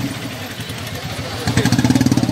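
Motorcycle engine running close by with a rapid, even putter. It falls back at the start and comes up loud again about one and a half seconds in, over a crowd's noise.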